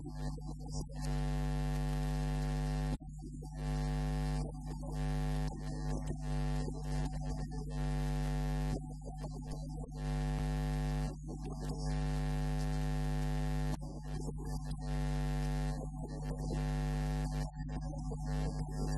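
A steady electrical mains hum, a low buzz with many overtones. A hiss above it cuts in and out abruptly every second or so.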